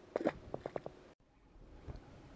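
A just-released small black bass splashing at the water surface beside the kayak: a quick run of five or six short, sharp splashes in the first second. A low thump follows near the end.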